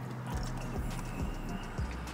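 Soft chewing and a few faint mouth clicks from someone eating fried chicken, over a low steady hum.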